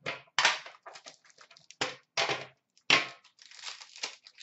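Plastic packaging from a trading-card tin being torn and crumpled, in a string of short irregular crinkling bursts.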